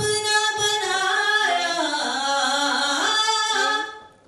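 A woman singing unaccompanied into a handheld microphone: one long, melodic phrase whose pitch dips in the middle and climbs again, breaking off just before the end.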